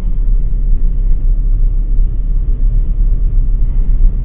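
Steady low rumble of a car's road and engine noise heard from inside the cabin while driving at about 40 km/h.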